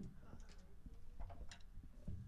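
Faint room noise with a few scattered small clicks and taps, no music playing.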